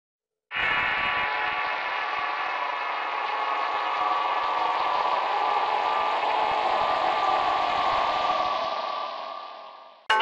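Channel-logo intro sound effect: a dense, sustained drone of many steady tones that starts suddenly about half a second in, holds evenly, then fades out over the last second or so.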